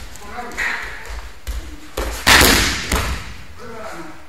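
An aikido partner's body lands on tatami mats with one loud thud a little past the middle, after a couple of lighter knocks on the mat.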